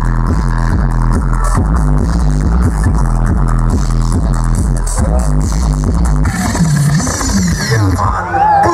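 Loud music from a sound system with a deep, repeating bass line played through speaker stacks. The bass line drops out about six seconds in, leaving a few sliding low notes.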